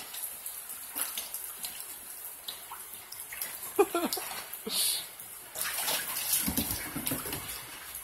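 Water splashing and sloshing in a plastic kiddie pool as a dog paws and wades in it, in irregular splashes that get heavier in the second half.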